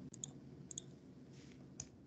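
Faint, light clicks at a computer, as the screen-sharing presenter opens a new browser page: a quick pair near the start, another pair before the middle and a single click near the end. A low steady hum from an open microphone runs underneath.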